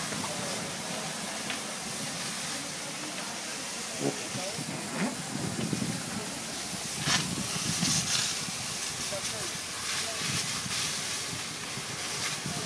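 Steady hiss of a fire hose spraying water on burning brush, with voices in the background.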